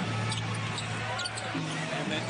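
Live basketball game sound: a ball bouncing on a hardwood court during play, over arena crowd noise and music.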